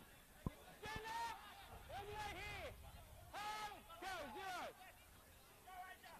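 Faint, distant shouting voices from the playing field: four or five drawn-out calls, each rising and then falling in pitch, with a single sharp click about half a second in.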